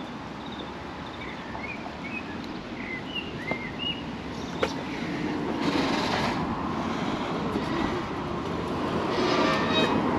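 Road traffic passing on a village street, a steady rush that swells from about halfway through, with small birds chirping in the first few seconds.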